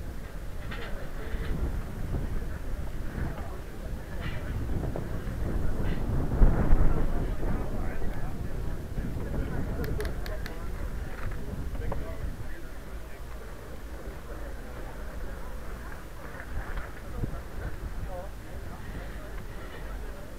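Carbon recumbent trike, pedalled with its motor switched off, rolling over brick paving: a steady rumble from the wheels and wind on the microphone, loudest about six to seven seconds in, with a few light clicks near the middle. Background voices of people around.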